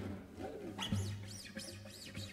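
Two guitars playing repeated gliding notes that arch up and down in pitch. Low arcs come about twice a second; then, after a short knock about a second in, higher arcs rise and fall about three times a second.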